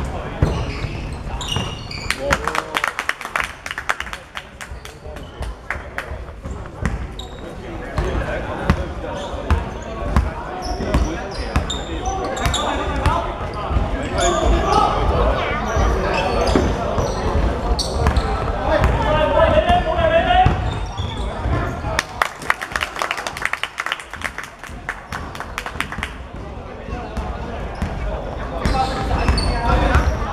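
A basketball game in a large hardwood-floored sports hall: a ball bouncing on the court in bursts of dribbling, with players' voices calling out and echoing.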